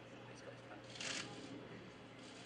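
Faint open-air ambience of a football training session with distant voices, and a short hiss about a second in.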